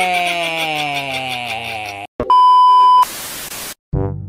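A man's long, drawn-out vocal call, slowly falling in pitch with a wavering vibrato, cuts off about two seconds in. A loud, steady electronic beep tone then sounds for under a second, followed by a short burst of static hiss.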